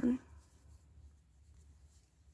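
Faint rubbing and scratching of cotton yarn sliding over a thin metal crochet hook as single crochet stitches are worked.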